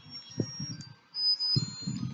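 Muffled bumps and rubbing of hands against the camera's microphone as the baby's hands are pulled away from it, with faint thin high-pitched tones over the top.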